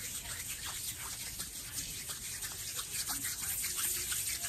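Hands fluttering and fingers rubbing close to the microphone: a quiet, steady stream of tiny crackles and soft swishes.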